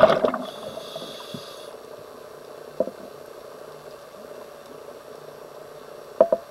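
Scuba diver's exhaled bubbles rushing past the microphone, trailing off just after the start, followed by a faint regulator hiss for about a second. Then a steady low underwater background with a couple of faint clicks.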